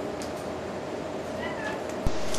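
A macaw's soft, short call that rises and falls in pitch about one and a half seconds in, faint over a steady background hum, with a few light clicks near the start.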